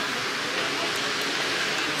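Steady, even hiss of background noise in a large shop, with no distinct events.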